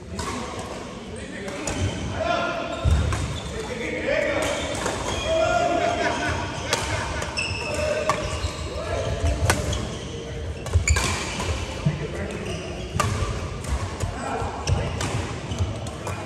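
Badminton rackets striking a shuttlecock in a large echoing sports hall, giving sharp cracks at irregular intervals. Players' voices carry between the hits.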